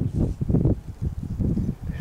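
Wind buffeting the camera microphone: an uneven low rumble that rises and drops in gusts.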